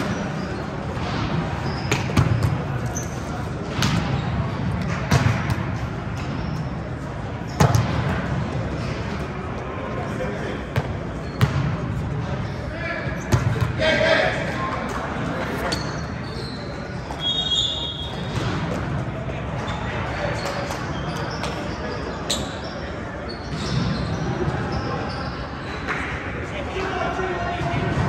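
Volleyballs being hit and bouncing on a gym floor, sharp impacts scattered through with a reverberant echo, over a steady babble of players' voices and shouts.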